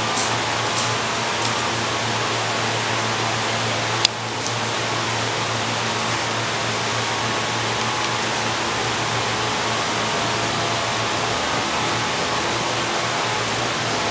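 Steady rushing noise of ventilation fans running, with a low hum beneath it. A single sharp click sounds about four seconds in.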